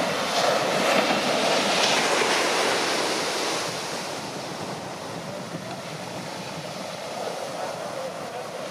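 Shorebreak waves breaking and washing up the sand. The sound is loudest in the first three or four seconds, then eases to a steady wash.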